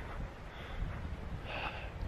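Wind rumbling on the microphone, with a man breathing close to it; the clearest breath comes about one and a half seconds in.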